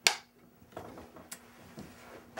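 Film clapperboard's sticks snapped shut once: a single sharp clack right at the start, over a steady low hum.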